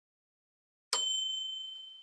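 Notification-bell 'ding' sound effect of a subscribe-button animation: a single bright bell strike about a second in, its high ringing tone fading away.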